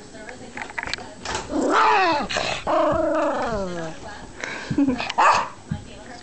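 A dog vocalizing in two long calls, about two seconds in: the first rises then falls, and the second slides down in pitch. Short, sharp sounds follow near the end.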